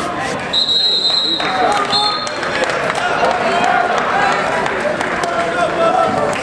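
Referee's whistle starting the wrestling bout: one long steady blast of about a second, starting about half a second in, then a short second blast, over crowd chatter.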